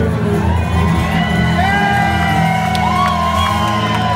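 Live band holding a sustained low chord at the close of a country song, while audience members whoop and shout over it.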